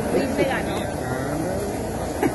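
Indistinct voices talking in short snatches over a steady mechanical hum and noise.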